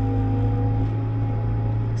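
Bobcat T66 compact track loader's diesel engine running steadily, heard from inside the cab as a deep hum with a steady higher whine over it.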